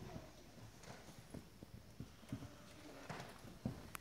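Quiet room with scattered faint knocks and handling noises, and one sharper click near the end.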